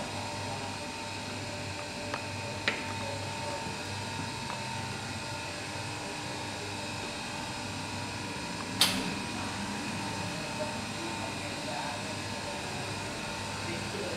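Steady hum of a café espresso machine, with a couple of small clicks and one sharp metal knock about nine seconds in as the portafilter is handled at the group head.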